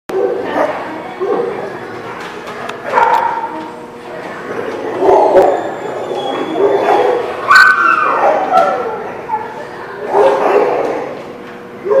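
Several dogs wrestling in play, with growls and barks coming in short bursts every second or two.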